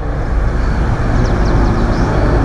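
Steady city traffic rumble, a dense noise with a deep low end, with a few faint high chirps a little past the middle.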